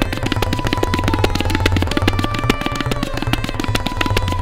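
Tabla playing a fast drut teentaal solo: rapid, dense strokes on the right-hand drum with deep, resonant bass strokes from the left-hand bayan. A sarangi holds a thin, sustained repeating melody line underneath as the lehra.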